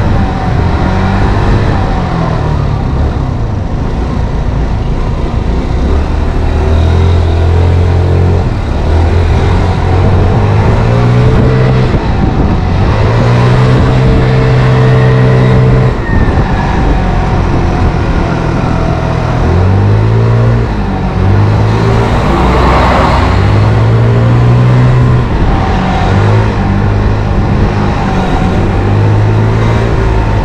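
Motor scooter engine running under way, its pitch rising and falling again and again as the throttle is opened and eased off. A brief rushing noise swells about two-thirds of the way through.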